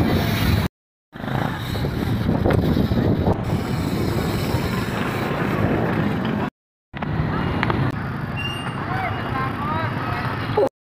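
Indistinct background voices of a crowd over steady outdoor noise, the sound cutting out to silence twice for a split second.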